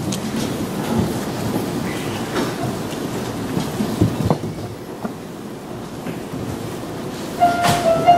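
A congregation sitting down in padded theatre-style seats and people walking on the carpet: a steady rumble of shuffling, rustling and small knocks. Near the end a piano begins to play a held note.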